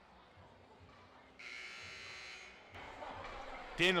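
Gymnasium scoreboard horn giving one steady electric buzz of a little over a second, about a second and a half in, signalling the end of a timeout. Hall noise rises after it.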